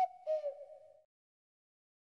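A short hoot-like two-tone sound effect, a higher note joined a quarter second later by a lower one that bends slightly down, about a second long.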